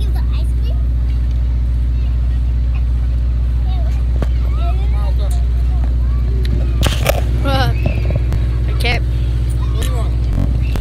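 A vehicle engine idling steadily, a deep even hum throughout, with children's voices talking over it, busiest about seven to nine seconds in.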